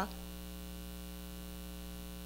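Steady electrical mains hum with its overtones, a constant low buzz on the recording in a gap between spoken phrases.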